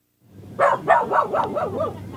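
A dog barking, a quick run of short calls with wavering pitch starting about half a second in.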